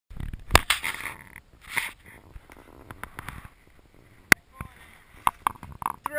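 Two sharp knocks, about half a second in and again just past four seconds, with soft rustling and faint indistinct voices between them.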